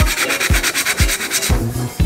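Abrasive rust-cleaning sponge blocks scrubbing rust off a black metal pot, a dry rubbing scratch repeated stroke after stroke. Background music with a steady beat about twice a second runs under it.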